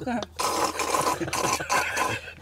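A man slurping rice porridge straight from a bowl, a long wet sucking slurp lasting over a second that stops just before the end.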